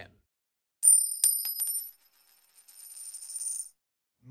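Coin-drop sound effect in a logo transition: a few quick metallic clinks with high ringing about a second in, dying away after about a second. A quieter high shimmer follows and cuts off just before the end.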